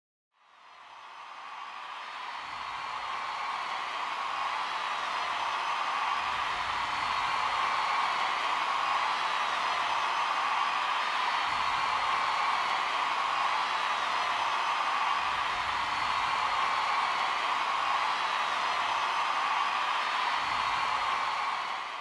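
A steady rushing noise, strongest in the middle of the range, fading in over the first two seconds and dropping away near the end.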